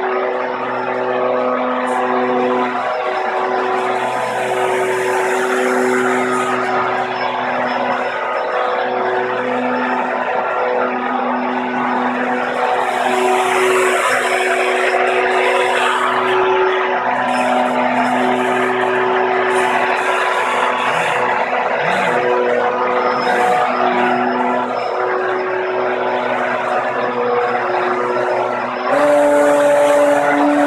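A small RC hovercraft's electric lift-fan and thrust-propeller motors running, their tones stepping up and down in pitch as the throttle is changed. Near the end they jump higher and louder.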